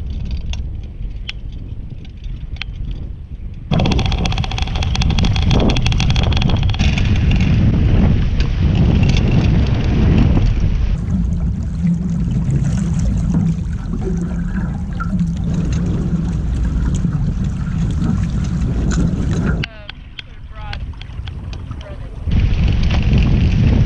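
Wind rumbling on the microphone and water rushing along the hulls of a Hobie 16 catamaran under sail. The sound jumps abruptly in level and character about four seconds in, again around eleven seconds, and near the end.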